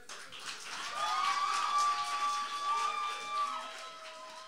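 Audience applauding and cheering, clapping under held whoops and shouts; it swells soon after the start and fades toward the end.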